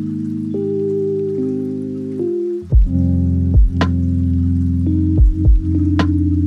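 Background music: held synth-like chords that change every second or so, with a deep bass and a beat with sharp hits coming in about halfway through.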